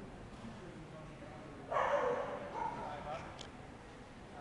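A dog barking loudly once, a little under two seconds in, then a shorter, quieter sound, over a low murmur of people talking.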